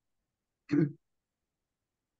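A person clearing their throat once, briefly, a little under a second in.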